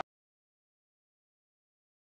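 Complete silence: the soundtrack goes empty as the commentary cuts off right at the start.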